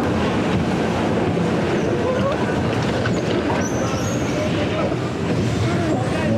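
Bumper car ride running: a steady, loud din of the electric cars rolling across the arena floor, with faint voices mixed in.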